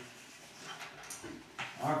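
Chalk scratching and tapping on a chalkboard as words are written, with a few brief high-pitched traces about a second in. A man's voice begins a word near the end.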